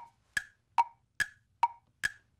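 Tick-tock wood-block sound effect: evenly spaced clicks about two and a half a second, alternating between a lower and a higher pitch. It serves as a thinking-time cue while a question waits for its answer.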